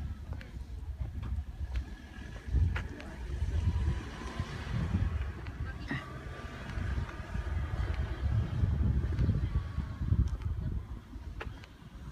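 Outdoor ambience: wind buffeting the microphone in an uneven low rumble, with faint distant voices in the middle stretch.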